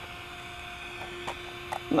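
A faint, steady electrical hum made of a few held tones, with a couple of light clicks from handling partway through.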